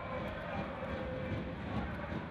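Steady din of an indoor volleyball arena crowd during a rally. A held note runs through the noise and fades about three-quarters of the way through.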